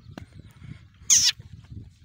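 A Rajanpuri goat gives one short, high-pitched bleat about a second in, falling in pitch.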